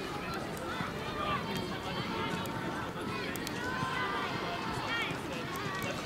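Indistinct talk from several players in a tight team huddle, voices overlapping one another over steady outdoor background noise.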